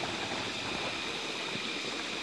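Shallow creek water running over stones: a steady, even rush.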